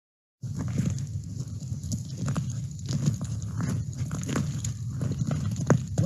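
Footsteps crunching on a gravel trail, irregular short crunches over a steady low rumble. The sound starts abruptly about half a second in.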